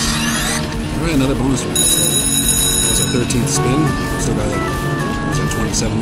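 Sizzling Wheel Mighty Tiger video slot machine playing its electronic spin and reel sounds: rising sweeps at the start, a ringing chime about two seconds in, then a stepped run of beeping tones going up and down near the end. A small win lands as the tones end. Casino chatter runs underneath.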